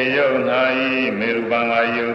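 A Buddhist monk's voice chanting in long held notes that glide up and down between syllables.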